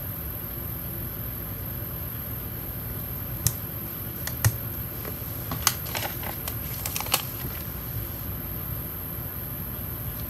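Planner stickers being peeled from their sheet and pressed down onto a paper planner page: a handful of light, scattered clicks and taps from fingernails and the sticker sheet, mostly in the middle of the stretch, over a steady faint background.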